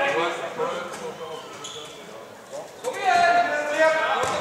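Voices calling and shouting at a handball game, with a few short knocks of a handball bouncing on the court. A loud, held shout comes about three seconds in.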